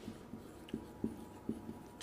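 Marker pen writing on a whiteboard: a series of faint, short strokes.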